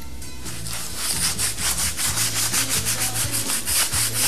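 Rapid back-and-forth scrubbing of a dye applicator working orange dye into batik cloth stretched on a wooden frame. The strokes are softer for the first second, then come quick and even at about five a second.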